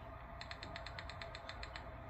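A rapid, even run of small mechanical clicks, about ten a second, lasting about a second and a half, over a faint low hum.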